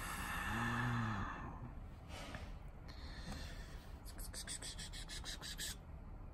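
A person briefly hums or groans with a breathy exhale, breathes out again, then a quick run of light clicks follows near the end.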